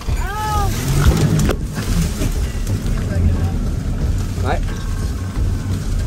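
A small boat running into the vegetation of the bank: a short cry about a quarter second in, then branches scraping and knocking against the boat twice in the first couple of seconds, over a steady low rumble.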